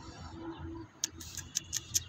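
A quick run of five or six short, sharp high ticks in the second half, over faint background.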